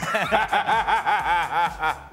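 A man laughing heartily in a quick, even run of "ha" sounds, about five a second, that stops near the end.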